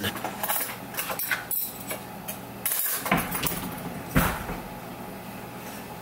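Kitchen handling sounds around an open oven: light clinks and clatter over a steady hiss, with a dull thump about four seconds in.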